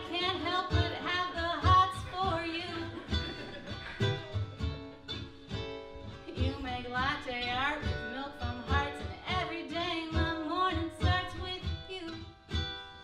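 A woman singing live, accompanying herself on a ukulele strummed in a steady rhythm.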